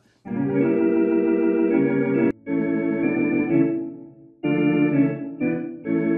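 Sampled vintage Thomas console organ (Soundiron Sandy Creek Organ virtual instrument) playing a few held chords, with short breaks between them about two and four seconds in.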